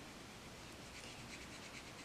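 Faint, soft brushing of a watercolor brush stroking across paper, barely above room tone.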